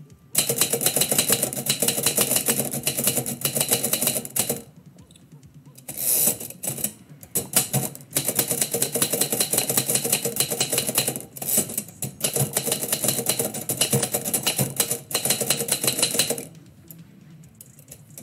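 Typewriter being typed on: fast runs of sharp keystrokes with a few short pauses between them, stopping about sixteen seconds in.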